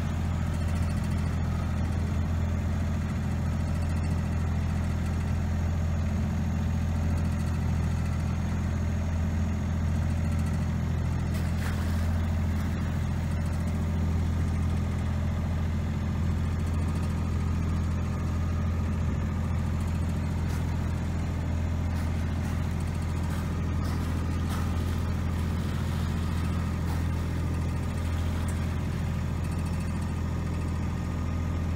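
Boat engine running steadily with an even low hum.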